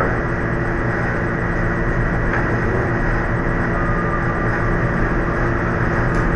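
Steady low hum and hiss of room noise, unchanging throughout.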